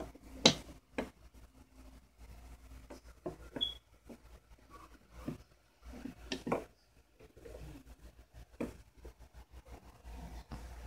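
Scattered light clicks and knocks at irregular intervals, the sharpest about half a second in, with one brief high chirp near the middle.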